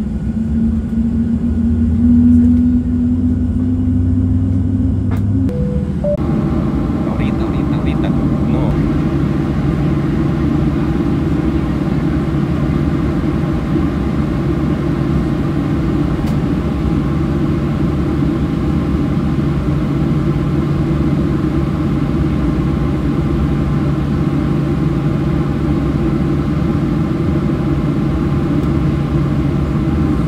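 Cabin noise inside a Southwest Airlines Boeing 737 on the ground before takeoff: a steady low drone from the jet engines and the cabin air system. About six seconds in, the drone shifts abruptly to a different steady pitch and stays there.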